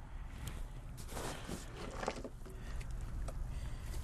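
Faint clicks and rustling as a tight screw cap is worked off a can of PVC solvent primer or cement.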